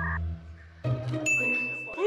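A bright, steady ding sound effect starts a little over a second in. It plays over quiet background music with a low bass line.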